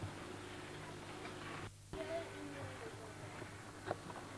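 Low steady hum and hiss of an old home-video camera's soundtrack, with faint wavering tones in the background. It drops out briefly just under two seconds in, where the recording cuts, and there is one click just before the end.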